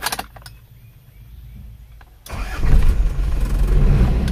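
Isuzu Panther engine started about two seconds in, then running loud and steady. A few short clicks come just before, near the start.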